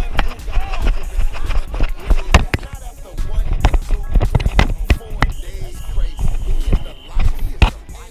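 Background music with a steady low beat. A man laughs about a second in, and irregular sharp knocks sound through the rest.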